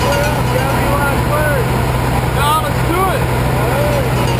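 Steady drone of a small skydiving plane's engine and propeller heard inside the cabin, with voices calling out over the noise.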